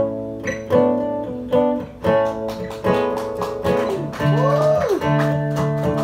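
Acoustic guitar strummed in a steady rhythm of chords, the opening of a song. About four seconds in, a brief tone rises and falls over the chords.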